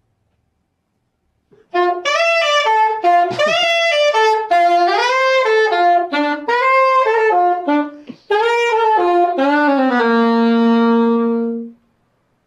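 Saxophone played solo: a quick melody of short notes begins about two seconds in and ends on a long held low note that stops just before the end.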